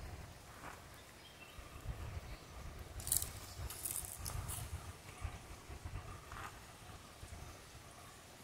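Outdoor woodland ambience on a moving phone microphone: uneven low rumbling, with a few short high chirps from birds about three seconds in.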